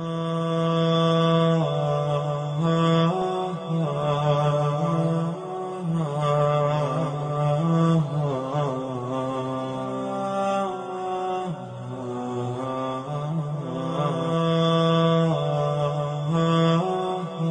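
A solo male voice chanting a religious recitation, with long held notes that slide and waver slowly in pitch.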